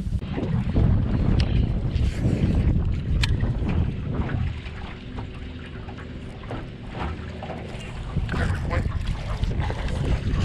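Wind rumbling on the microphone, strongest in the first few seconds, easing in the middle and rising again near the end. A few light knocks sound over it.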